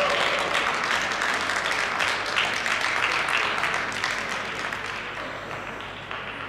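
Audience applauding, dying down over the last couple of seconds.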